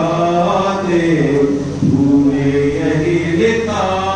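A man chanting a devotional verse in praise of the Prophet, unaccompanied, in long held notes that glide up and down in pitch.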